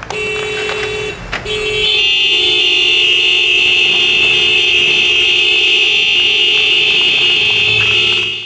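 Vehicle horns held down in a long, loud, steady blast. A short first honk breaks off a little over a second in, then the horn sounds again and a second horn of slightly lower pitch joins it.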